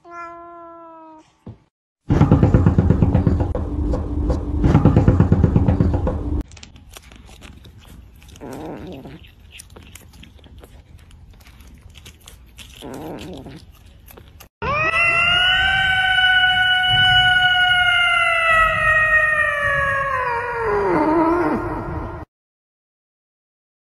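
A domestic cat's short meow, then a few seconds of loud rough noise and a stretch of quieter clicking. Near the end comes a long, loud cat yowl lasting about seven seconds, held steady and then sinking in pitch as it dies away.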